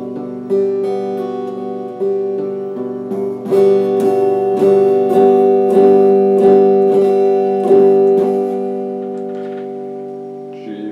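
Electric guitar chord picked with a pick: struck once, again about two seconds in, then a run of even strokes a little over half a second apart from about three and a half seconds in, before the chord is left ringing and fades near the end.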